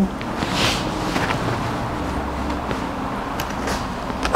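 Steady background noise of the room, with a brief rustle about half a second in and a few light clicks.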